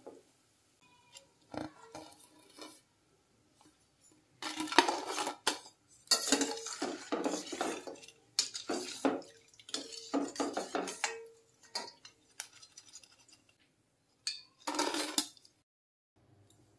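Metal slotted ladle scraping and clinking against a steel kadai while ribbon pakoda are stirred and lifted from the frying oil. It comes in irregular bursts from about four seconds in, with one last short burst near the end.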